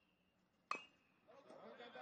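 A metal bat hits a baseball once, about two-thirds of a second in: a sharp ping with a brief ring, off a slowly bouncing ground ball that goes foul.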